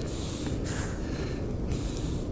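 Young entangled Cape fur seal breathing hard in hissing breaths about a second apart, over a steady low rumble of wind on the microphone.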